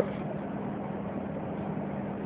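Steady background hiss with a faint, even low hum; nothing starts or stops.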